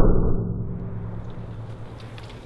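A 12-gauge shotgun slug fired into an old steel propane tank: the blast peaks right at the start, then its low echo dies away steadily over about two seconds.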